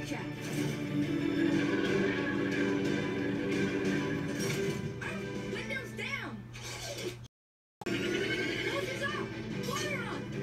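Cartoon soundtrack playing from a television: background music under character dialogue, with a dog's bark among the lines. The sound cuts out completely for about half a second near seven seconds in.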